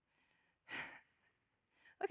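Near silence, with one short breath into a microphone just under a second in.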